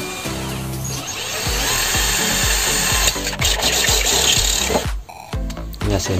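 Cordless drill turning a hole saw through a 3-inch PVC pipe wall. It starts about a second in and stops suddenly just before five seconds, over background music with a steady beat.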